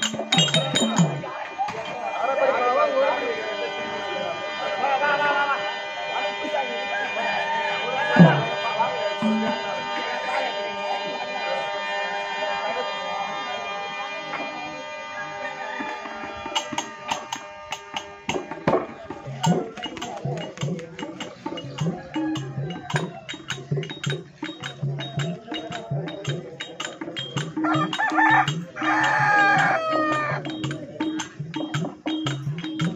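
Live Therukoothu folk-theatre music. A steady held reed drone sounds under a wavering voice for the first half, then percussion and sharp cymbal-like clicks take up a fast, even beat from about halfway.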